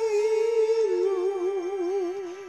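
A high singing voice holding long notes with an even vibrato over a karaoke backing track, stepping down to a lower note about a second in.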